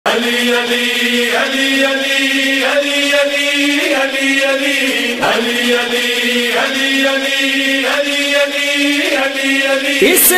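A voice chanting in long, held notes, phrase after phrase of about a second each, as the opening of an Urdu devotional song in praise of Ali.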